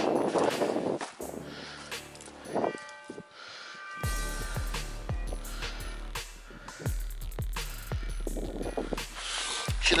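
A metal detector sounding a steady pitched tone for about a second and a half over a buried target, a long signal that reads as a target ID of 79. After that, wind rumbles on the microphone, with a run of short thumps.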